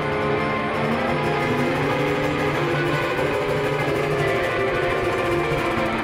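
Two guitars, acoustic and electric through effects pedals, hold sustained ringing chords in an instrumental passage, with a steady low note under slowly shifting higher notes.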